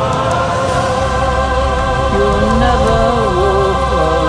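Choir with backing music holding a long sustained chord, then a lower melodic line comes in about two seconds in over a steady bass, in the closing bars of the song.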